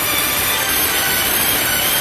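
A loud, steady rush of noise with no pitch or rhythm, taking the place of the music.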